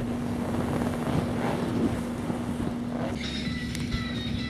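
A steady motor hum with rough, wind-like noise on the microphone; music comes in about three seconds in.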